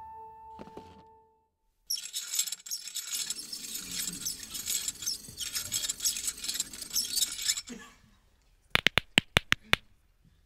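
Audience applause, a dense crackle of clapping lasting about six seconds, then a quick run of about eight sharp clicks within a second near the end.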